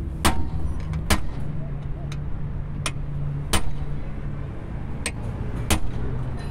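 Sharp metal-on-metal hammer blows, about seven at irregular intervals, on a rusty rear brake drum that has a puller fitted to its hub, knocking the stuck drum loose. A steady low hum runs underneath.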